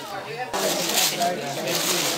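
Paper wrapping of a bouquet crinkling as it is handled, over voices.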